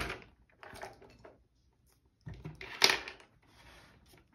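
Brief handling noises from small tools on a tabletop: short rustles and scrapes, with one sharp click about three seconds in.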